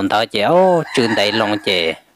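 A man's voice telling a folk tale in Hmong, with one long drawn-out syllable that rises and falls in pitch about half a second in.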